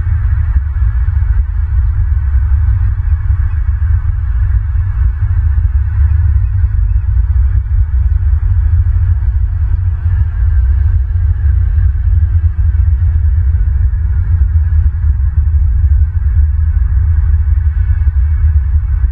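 Steady, loud low rumble with a fainter hiss above it, unbroken and without distinct calls or knocks.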